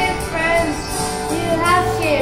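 A boy singing into a handheld microphone over a karaoke backing track, holding and gliding between notes.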